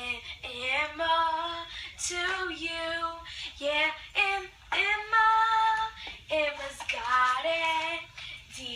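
A young female voice singing a song with no instruments heard, in a run of short phrases of held notes.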